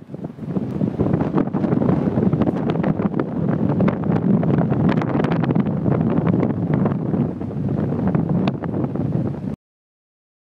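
Strong wind buffeting the camera microphone on an open beach, a rough, fluttering rumble with crackles. It fades in over the first second and cuts off suddenly just before the end.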